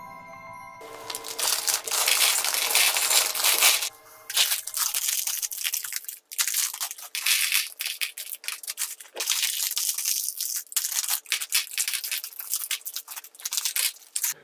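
A short music jingle with mallet-like tones ends about a second in, then a loud clatter of LEGO bricks poured out of a plastic bag onto a plastic baseplate for about three seconds, followed by scattered clicks and rattles as the last pieces are shaken out of the bags.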